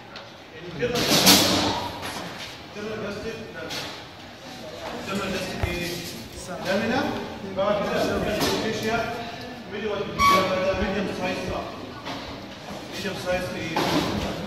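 A man's voice talking in a large, echoing classroom, with a brief loud noise about a second in.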